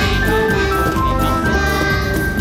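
Live children's song: electronic organ (Electone) accompaniment playing a bright, simple melody over a steady beat, with a group of young children singing along.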